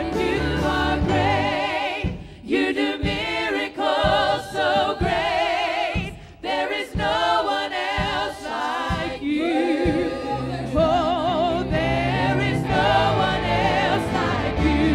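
Church worship team singing a gospel praise song with vibrato over instrumental accompaniment. The low backing thins to short hits about two seconds in and fills back in after about ten seconds.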